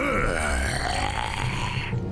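Cartoon dragon's deep, guttural growl lasting about two seconds and cutting off suddenly at the end.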